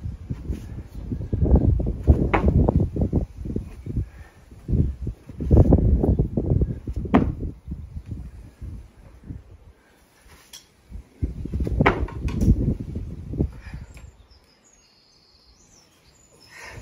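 Wind buffeting an outdoor microphone in three gusty spells of a few seconds each, with a few sharp clicks among them.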